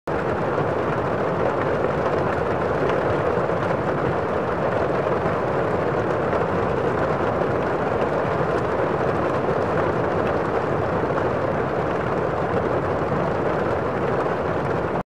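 A steady, even rushing noise like a constant roar, with no tune, beat or change in level.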